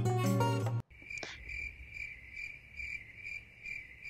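Background music with plucked guitar cuts off suddenly under a second in. It is followed by crickets chirping in a steady, high pulse of about three chirps a second, a typical comic 'awkward silence' effect.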